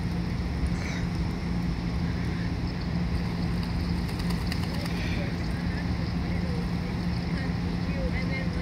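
A steady low rumble with a constant hum throughout, and light splashing from mallards bathing and diving in the water about midway.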